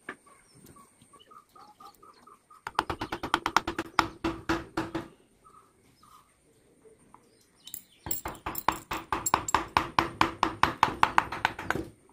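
A wood-carving chisel tapped into a teak board in quick, light, even strokes, about six a second, in two runs with a pause between. Faint bird chirps sound in the quieter stretch near the start.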